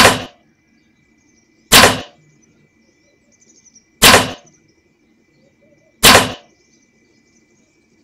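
Bow shots: four sharp cracks of a bowstring release and arrow, about two seconds apart. A faint steady high-pitched tone runs beneath them.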